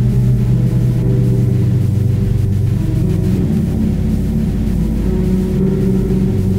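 Instrumental music led by a Fender Jazz electric bass, low sustained notes drenched in reverb that ring together into a dark drone, the pitch shifting a couple of times.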